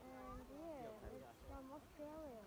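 Faint, indistinct human voices with pitch that rises and falls in wavering glides, like people calling or talking at a distance.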